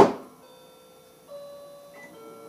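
Microwave oven door shut with a single loud clunk, then the microwave running with a steady hum that steps up slightly just over a second in.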